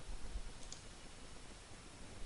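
A single faint computer-mouse click about two-thirds of a second in, over low background hiss and rumble.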